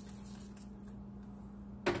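A container set down with a single sharp knock near the end, over a steady low hum.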